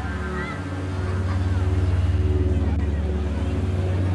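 A motor engine running steadily, a low pulsing hum that grows a little louder, with faint voices behind it.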